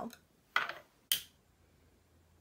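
Two short sharp clicks about half a second apart as a glass-jar candle is uncovered and lit: its lid is handled, and a long wand lighter is used.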